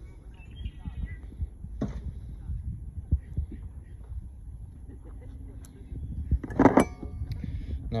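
Low rumbling handling noise on a handheld microphone with a few faint clicks and taps while a small fishing jig is taken off the line and handled, then a brief louder burst near the end.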